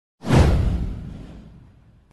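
An intro whoosh sound effect with a deep low rumble under it. It starts sharply a moment in and fades away over about a second and a half.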